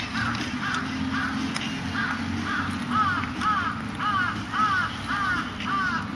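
A crow cawing over and over, about a dozen evenly spaced caws at roughly two a second, over a steady low rumble.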